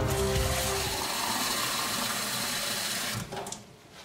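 Kitchen tap running water into a plastic jug, a steady rush that stops about three seconds in, followed by a few light knocks.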